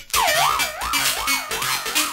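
A siren-like wailing tone, swinging up and down about two and a half times a second, laid over a minimal tech-house beat in a DJ mix; it cuts in just after a brief drop in the music at the very start.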